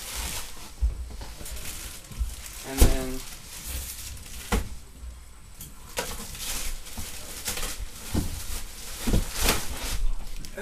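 Cardboard box and plastic wrapping being handled: scattered knocks and thumps with rustling, and a brief vocal sound about three seconds in.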